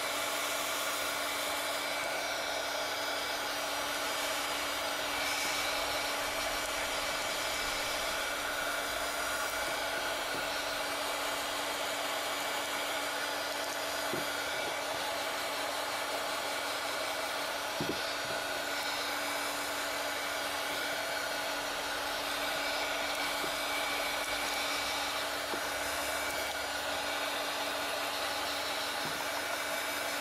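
Handheld heat gun blowing steadily with a constant motor hum while it shrinks a plastic shrink band onto a bar of soap. Two faint clicks near the middle.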